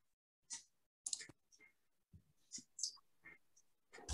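A few faint, scattered clicks from a computer mouse and keyboard being worked, mixed with faint murmurs, heard through a video-call connection.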